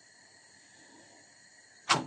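Quiet room tone, then a single short, sharp slap near the end as the filled börek dough is laid onto the griddle.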